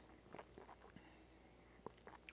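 Near silence: room tone with a few faint small clicks.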